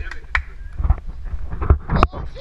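Irregular knocks and thumps with a low wind rumble on a pole-mounted action camera's microphone, from the camera being carried by someone moving fast and leaping; about four sharp knocks in two seconds, the last and strongest near the end.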